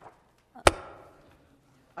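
A single sharp knock about two-thirds of a second in, followed by a short fading ring.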